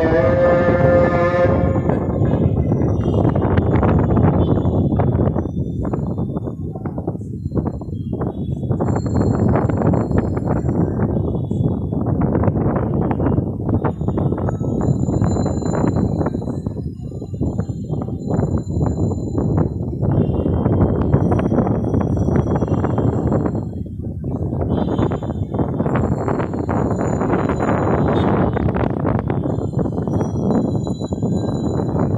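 Wind buffeting the microphone in uneven gusts, a rough rumbling that dips and swells several times.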